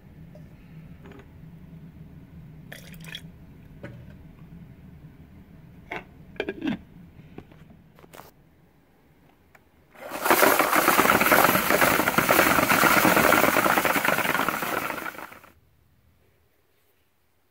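A few light clicks and knocks as a bottle of burnishing compound is handled at a steel-media tumbler barrel. About ten seconds in comes a loud, steady, water-like rushing noise from the barrel of steel burnishing media, lasting about five seconds before it dies away.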